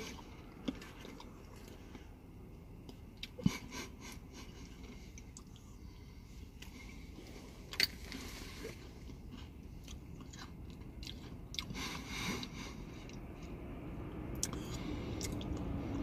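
Quiet chewing of a spoonful of soft-serve ice cream with Oreo cookie pieces, with a few sharp clicks, two of them louder, about three and a half and eight seconds in.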